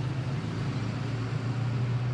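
A motor vehicle engine running at idle, a steady low hum over faint street traffic noise.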